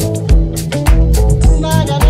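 Downtempo ethnic house music: a steady kick-drum beat about twice a second, with a bass line and crisp percussion, and a wavering melodic line coming in near the end.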